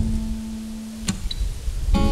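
Acoustic guitar: a note rings on, then a fresh stroke on the strings about a second in, over a low rumble.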